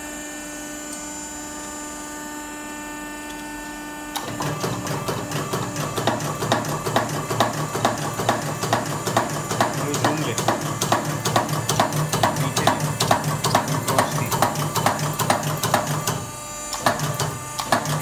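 Automatic die cutting press for jewellery dies humming while switched on, then from about four seconds in cycling at a fast, even rhythm as its progressive die punches pieces out of a metal strip, with a brief pause near the end before it resumes.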